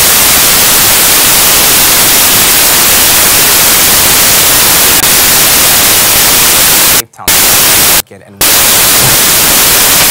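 Loud, steady static hiss filling the sound track, cutting out briefly twice near the end.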